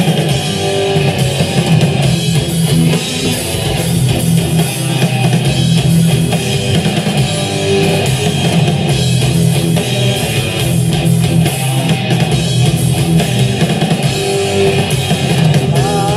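Live progressive rock band playing an instrumental passage: electric guitars, bass guitar and drum kit, loud and steady through the stage PA. A singing voice comes in right at the end.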